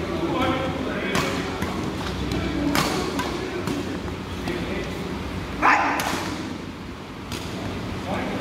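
Badminton rally in a reverberant sports hall: rackets strike the shuttlecock with several sharp smacks, and a short, loud higher-pitched sound stands out about five and a half seconds in, over a background of voices.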